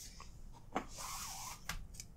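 Faint handling noise of nylon paracord being worked by hand: a soft swish of cord rubbing and sliding for about half a second, with a light tick just before and another just after.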